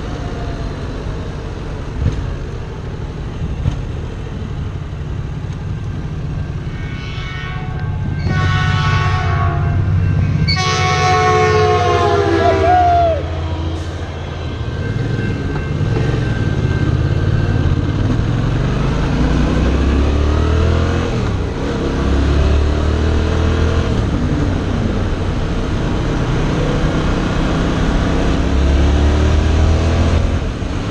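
A train horn sounds in two long multi-tone blasts about a third of the way in, over the wind and the motorcycle's engine. Afterwards the Yamaha FZ-07's 689 cc parallel-twin engine revs up repeatedly as the bike accelerates.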